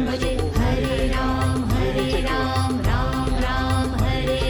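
Devotional music: chant-like singing over a steady drone, with a pulsing beat underneath.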